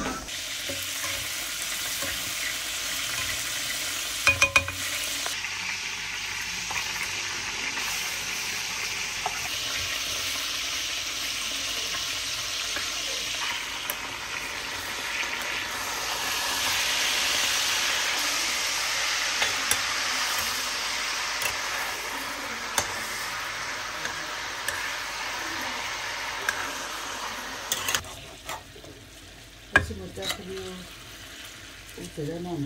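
Food sizzling as it fries in a pan, with a spatula stirring and scraping now and then. The sizzle grows louder around the middle, with a few short clicks about four seconds in, and it dies down near the end.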